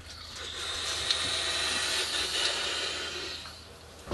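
A long draw on an electronic cigarette: a steady hiss of air and vapour pulled through the atomizer for about three seconds, with a couple of faint crackles from the coil, fading out near the end.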